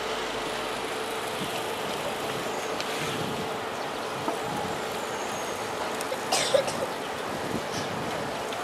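Steady outdoor background noise with a faint steady hum, and a brief sharp sound about six and a half seconds in.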